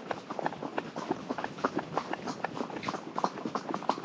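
Horse's hooves striking a dirt track as it is ridden, a steady run of short, sharp hoofbeats, several a second.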